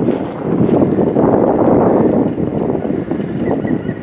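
Wind buffeting the microphone of a camera on a moving bicycle: a loud, low rushing noise. A faint, thin, steady high tone comes in near the end.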